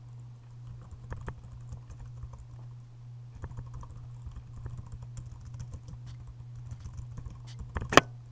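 Computer keyboard typing: an irregular run of keystrokes over a steady low hum, ending in one sharp, much louder keystroke just before the end as Enter is pressed to run the command.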